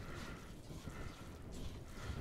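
Hands mixing moistened bread and dry breadcrumbs in a mixing bowl, a faint, soft squishing and rustling.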